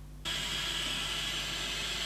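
Small pen blowtorch burning with a steady hiss of its gas flame, which starts abruptly just after the start.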